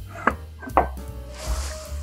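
Soft background music, with two light clinks and a short scrape from a porcelain tureen lid being lifted off.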